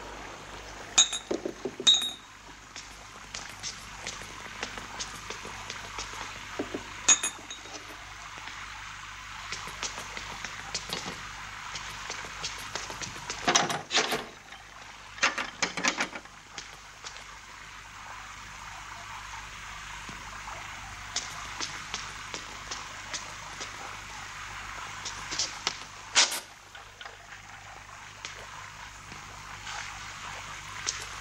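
Steady hiss of rain from a thunderstorm, with scattered clinks and knocks of crockery and glass. The loudest knocks come in a cluster about halfway through and again near the end.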